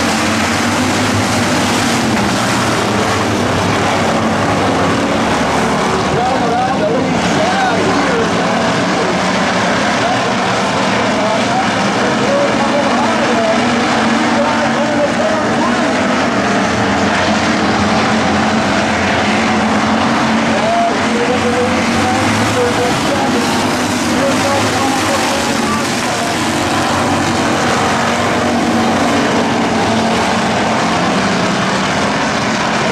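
A pack of hobby stock race cars racing on a dirt oval, their engines running hard together in a loud, steady mass of sound, with pitch rising and falling as they go through the turns.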